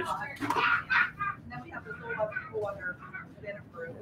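Indistinct talk: people's voices near the microphone, with no clear words.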